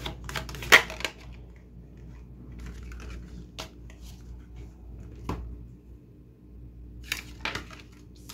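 A deck of oracle cards being shuffled by hand: soft rustling with scattered sharp card clicks, the loudest a bit under a second in, then cards dealt out onto the table near the end.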